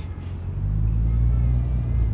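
A low, steady rumble that sets in about half a second in and holds.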